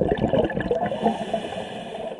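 Scuba diver breathing through a regulator underwater: exhaled bubbles gurgle for the first second, then ease into a quieter steady hiss of the inhale.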